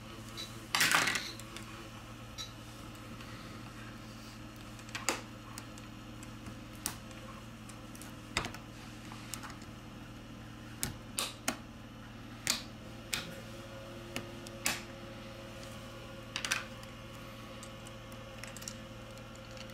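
Sparse small clicks and taps, about fifteen of them a second or so apart, from a plastic pry tool and metal tweezers prying at a smartphone's internal plastic antenna cover, with a short scrape about a second in.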